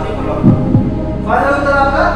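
Game-show suspense background music: a low heartbeat-like throb about half a second in, then a held synth chord from a bit over a second in.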